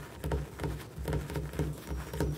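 Fingers tapping on a hard kitchen countertop: a quick, even run of taps, about three a second, each a dull knock with a light click.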